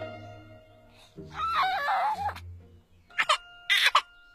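Soft film-score music with low sustained notes, over which a baby's voice gives a wavering wail about a second in, then breaks into short, sharp crying sobs near the end.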